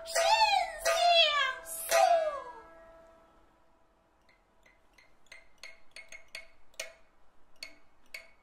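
A Kun opera soprano sings a high, sliding melisma over a steady held note, and it dies away about three seconds in. After a short hush, sparse sharp plucked notes from the pipa begin, about three a second.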